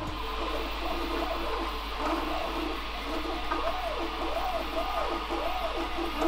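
Prusa i3 MK2 3D printer running a print: its stepper motors whine in tones that rise and fall in pitch as the print head speeds up and slows down. Over the second half the tones come about twice a second, over a steady low hum.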